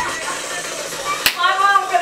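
A woman laughing without words, with one sharp smack about a second and a quarter in.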